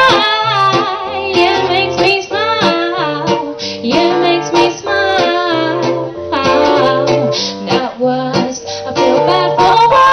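A woman singing a pop song live into a microphone, accompanied by guitar.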